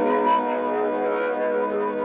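Intro of an instrumental melodic trap beat: a sustained synthesizer chord held steady, with no drums yet.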